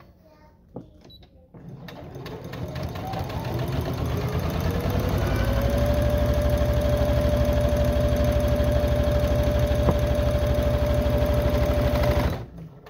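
Electric domestic sewing machine stitching a straight seam through layered fabric. It starts slowly about a second and a half in, speeds up over the next few seconds with a rising whine, runs steady and fast with a rapid even needle rhythm, then stops right at the end.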